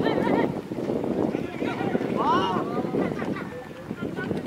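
Crowd chatter and shouting from spectators and players around a football pitch, with one high drawn-out shout about two seconds in.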